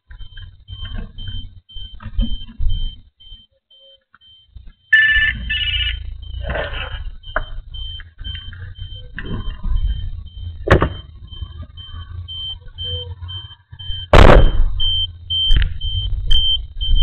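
Handling noise from a small pen camera being moved about inside a car: low rumbling and scraping, with a few knocks and one loud thump about two seconds before the end. A faint high pulsing tone, about three or four pulses a second, runs underneath.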